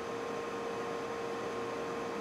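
Steady room hiss and electrical hum with a faint constant tone; nothing else happens.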